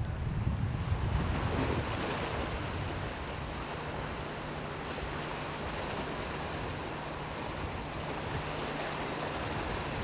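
Sea waves and surf: a steady rushing wash of water, with a faint low hum underneath.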